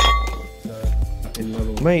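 A single sharp metallic clink at the start that rings briefly and fades, over background music.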